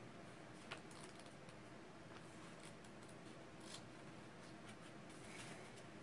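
Near silence: room tone with a few faint, short clicks and light rustles.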